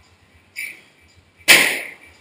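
A strike landing in martial-arts training: a faint short smack about half a second in, then one loud, sharp smack near the end that dies away within half a second.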